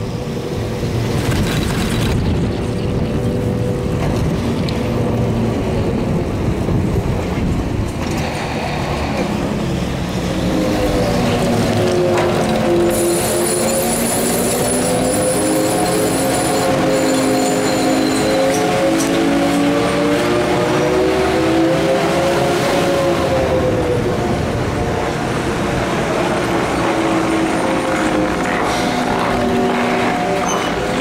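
Detachable chairlift running: a rumble with wind noise, then from about ten seconds in a steady whine from the lift terminal's machinery that wavers slowly in pitch.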